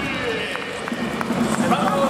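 Stadium public-address announcer's voice echoing through the ballpark as a player in the starting lineup is introduced, with a few short clicks.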